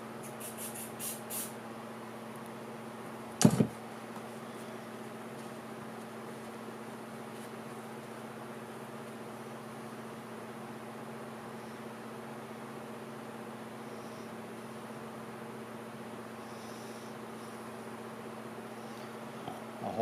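A steady low mechanical hum, with a few light clicks at the start and one sharp knock about three and a half seconds in.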